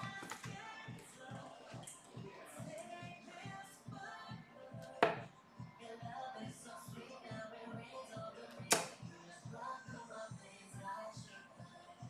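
Faint background music with a steady beat. Two sharp thuds of darts landing in a bristle dartboard cut through it, one about five seconds in and another near nine seconds.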